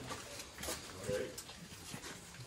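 Faint, indistinct voices with a few light knocks.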